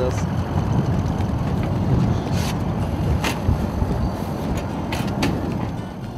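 Wind buffeting the microphone: a loud, uneven low rumble with a few sharp clicks scattered through it.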